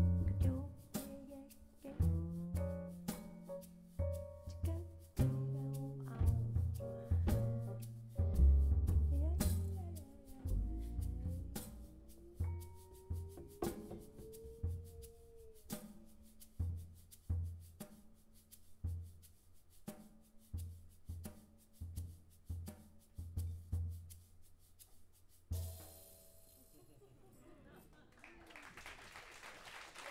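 Live jazz combo of piano, upright bass and drum kit playing, with a sung line that slides up and down in pitch; the tune ends about 25 seconds in, and applause begins shortly before the end.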